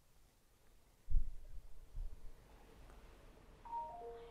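Two low, dull thumps about a second apart, then near the end a faint, brief run of a few clear tones stepping down in pitch, the noise the ghost hunters take for a woman's voice.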